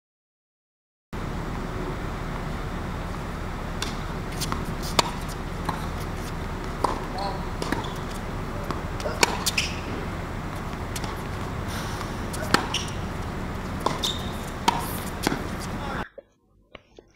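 A tennis ball being struck by racquets and bouncing on a hard court during a rally: a dozen or so sharp, short pops at uneven intervals over a steady background hiss. The pops start after about a second of silence.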